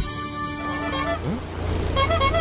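Background music that ends about a second in, giving way to a steady low rumble with a hiss over it.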